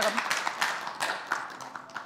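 Studio audience applauding, the clapping dying away over about two seconds.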